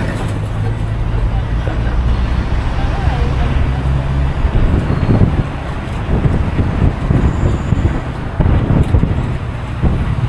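Minibus engine running with road noise as it drives along. About halfway through, gusts of wind start buffeting the microphone held at the open window.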